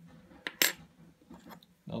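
Old metal coins clinking as one coin is put down among others and the next is picked up: a small click, then a sharper clink about half a second in.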